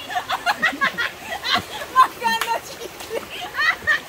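Several people talking and calling out in short bursts over the steady rush of a shallow creek, with one sharp knock about halfway through.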